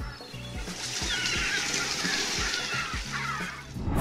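Water splashing and sloshing around a group of Dalmatian pelicans flapping and paddling on a lake, over background music. The splashing grows louder about a second in.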